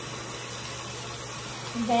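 Steady hiss of water running from a bathroom sink tap while soapy hands are rubbed together under it; a voice starts near the end.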